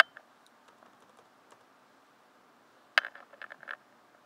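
Keystrokes on a computer keyboard: one sharp click at the start, then a quick run of about six keystrokes about three seconds in.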